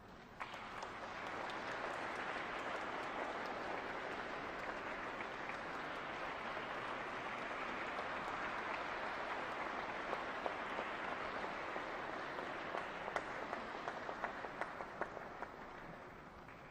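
An audience applauding in a hall. The clapping starts sharply about half a second in and holds steady, then thins to a few separate claps near the end and dies away.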